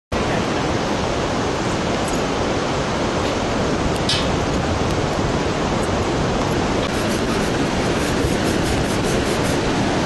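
Steady, loud rushing noise with no pitch or rhythm, with a faint high tick about four seconds in and a run of faint ticks in the last three seconds.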